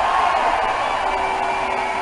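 Large outdoor crowd applauding and cheering in a steady wash of noise.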